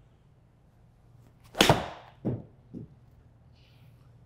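A Titleist T150 iron striking a golf ball in a small simulator bay: one sharp, loud crack of impact with a short ring, followed by two softer knocks about half a second apart.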